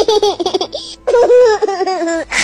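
High-pitched laughter in quick, bouncing bursts that run into a longer drawn-out laugh about halfway through.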